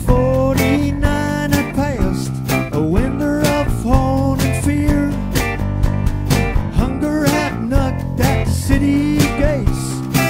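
Live acoustic band playing a country-style song: strummed acoustic guitar, bass and drums, with a sung melody over it. The drums keep a steady beat of about two hits a second.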